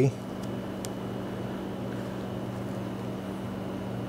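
Steady room tone: a low electrical-sounding hum with a faint high whine and hiss, with one faint click about a second in.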